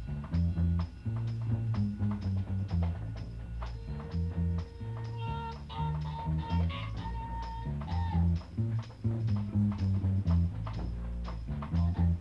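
Live jazz combo playing: drums and a moving bass line under a lead instrument that holds long notes.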